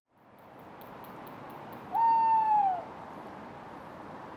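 Tawny owl hooting once about two seconds in: a single note of under a second that rises quickly, holds steady, then slides down at the end, over a steady background hiss.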